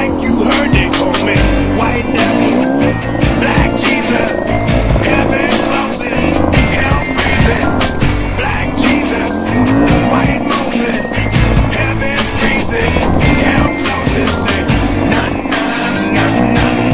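Enduro dirt bike engine revving up and down as it climbs a rocky trail, with frequent knocks and rattles from the bike over rough ground, under a music track.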